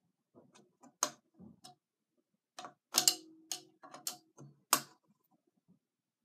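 A metal hex key clicking against a bolt on a stunt scooter's headset as it is turned in short strokes: a handful of separate sharp ticks, the loudest about three seconds and near five seconds in.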